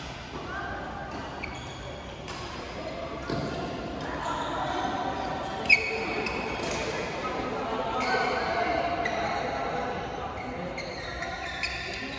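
Badminton play in a large, echoing indoor hall: sharp racket strikes on the shuttlecock, the loudest about six seconds in, with short high shoe squeaks on the court mats and players' voices chattering in the background.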